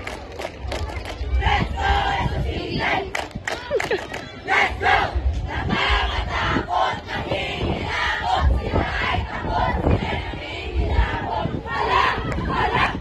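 A large cheerdance squad shouting a cheer yell together, with crowd voices mixed in and many short sharp hits through it.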